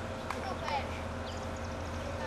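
Faint voices of people talking in the background, with a couple of light clicks and a steady low hum.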